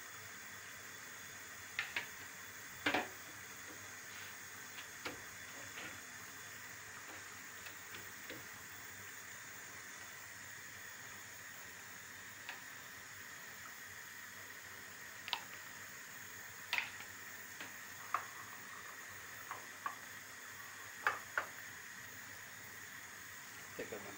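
Sparse light clicks and taps of a utensil and small bowl, with the rustle of the dry yufka sheets, as the egg-and-milk mixture is spread and the pastry is folded on a wooden board, over a steady faint hiss.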